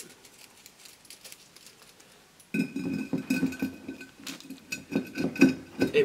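A rolled-up coil of stainless steel expanded metal lath is pushed into a large glass jar, rattling and scraping against the glass with a few sharp knocks. The jar rings with two steady tones. Before that, about two and a half seconds of faint ticking as the mesh is handled.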